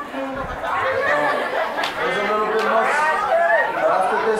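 Voices of several people talking over one another: crowd chatter.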